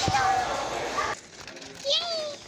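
Children chattering and calling out in a large, echoing hall, cutting off abruptly about a second in to a much quieter room; near the end a single voice rises and falls briefly.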